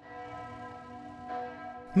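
Church bells of the Basilica of St. Lorenz in Kempten ringing the midday peal, several steady tones sounding together.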